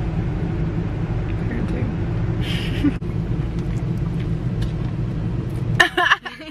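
Car engine running, heard as a steady low hum inside the cabin. It cuts off suddenly near the end.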